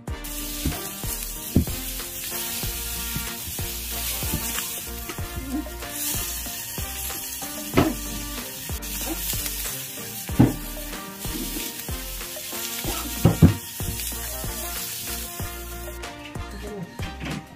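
Skewered chicken liver sizzling on a hot iron tawa, with a few sharp knocks as the skewers are handled, the loudest near the end.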